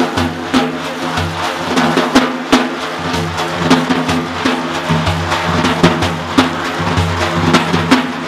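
Instrumental music: a daf frame drum beats a repeating rhythm of sharp strokes over other instruments holding low sustained notes, between sung verses.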